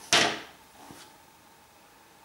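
Ferro rod pulled out of its holder on a plastic knife sheath: one sharp scraping click just after the start, fading within half a second, then faint handling noise.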